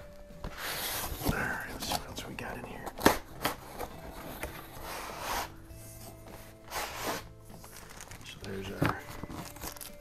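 Cardboard box and paper packing rustling and crinkling as an air rifle is handled and lifted out of it, with scattered knocks, the loudest a sharp one about three seconds in.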